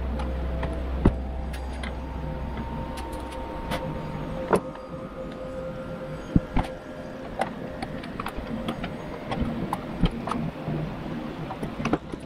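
Scattered clicks and knocks of plastic and metal parts as a fuel pump hanger assembly is handled and taken apart on a workbench, over a low steady hum that drops away about four and a half seconds in.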